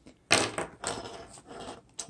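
Hands handling a nylon MOLLE pouch on a wooden tabletop: a knock about a third of a second in, then rustling and scraping of the fabric.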